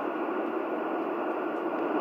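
Steady static hiss from a CB radio's speaker on receive, with no station coming in.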